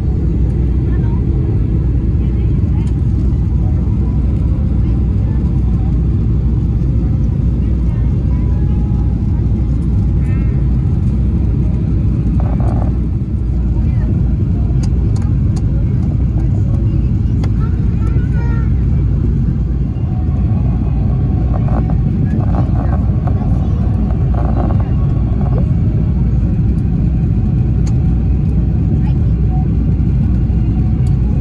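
Jet airliner cabin noise heard from a window seat over the wing: a loud, steady low rumble of engines and rushing air during the descent. Faint voices are heard now and then under it.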